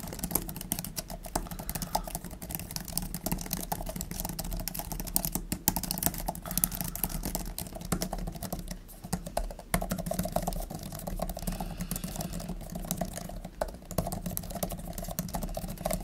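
Continuous typing on an Apple Magic Keyboard for iPad Pro: rapid, irregular key clicks. Partway through, the typing moves from the black 4th-generation keyboard to the white 5th-generation one, whose key feel seems slightly softer. A faint steady low hum sits under the clicks.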